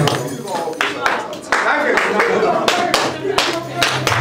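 Sharp hand-clap-like strikes, two or three a second and unevenly spaced, over a low steady drone and voices in a live ritual neofolk performance.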